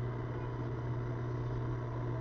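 A steady low hum with a faint hiss, unchanging throughout.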